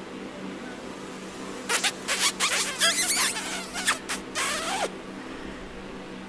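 A run of smacking, squeaky kisses, starting about two seconds in and stopping about five seconds in.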